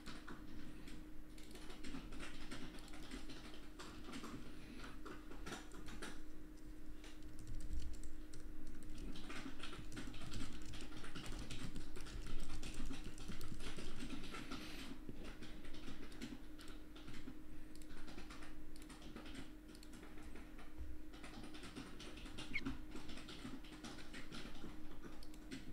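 Typing on a computer keyboard: irregular runs of key clicks broken by short pauses, busiest in the middle, over a faint steady hum.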